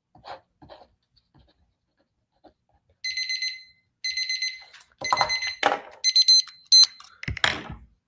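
Electronic timer alarm beeping in bursts about once a second, starting about three seconds in, signalling that the timed period is up. A few knocks sound among the later beeps.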